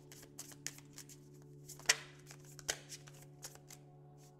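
A deck of tarot cards being shuffled by hand: a run of soft, irregular card slaps and clicks, with one sharper snap about two seconds in.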